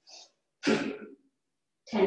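Bhastrika (bellows) pranayama breathing: a short, quieter inhale, then a louder, forceful exhale with a slight throaty edge about two-thirds of a second in, keeping the rhythm of roughly one breath cycle a second, then a pause.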